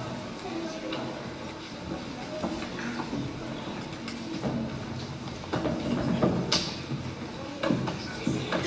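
Low murmur of children's voices and shuffling in a large hall, with a few scattered knocks, the sharpest about six and a half seconds in.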